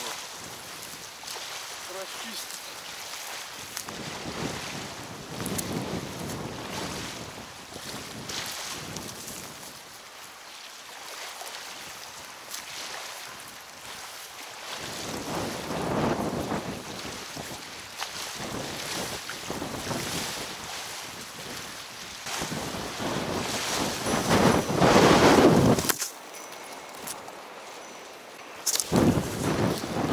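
Strong wind buffeting the microphone over waves washing against the river bank. The gusts swell and fade, the loudest coming shortly before the end and then dropping off suddenly.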